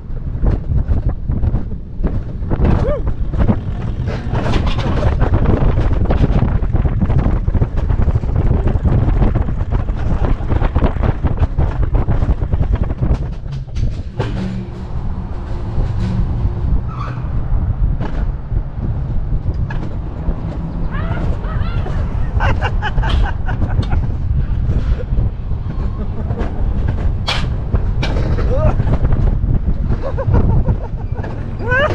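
Alpine mountain coaster sled running along its steel tube rails: a loud, continuous low rumble of the wheels with scattered clattering knocks. The rider's voice is heard at times.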